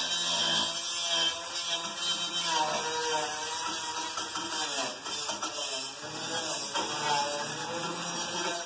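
Handheld electric power tool running on the steel framework, its motor pitch rising and falling as it is worked.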